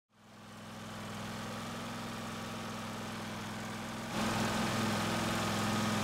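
Small engine of a wood-gas generator set running steadily, fading in at the start and getting louder about four seconds in.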